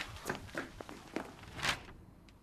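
A few irregular short knocks over a fading background, the loudest near the end.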